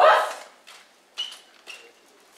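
A martial artist's short, loud kiai shout at the very start, with a katana strike, fading within half a second; two faint short sounds follow about a second later.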